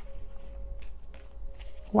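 Tarot cards being shuffled softly by hand, a quiet run of papery ticks, with a faint steady tone underneath.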